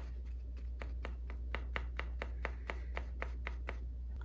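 Small paintbrush dabbing and working paint on a paper plate to mix it: a string of soft, even taps about four to five a second, over a steady low hum.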